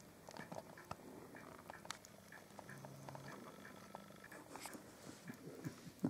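A baby hedgehog lapping liquid from a china plate: faint, quick wet licking clicks, about three a second.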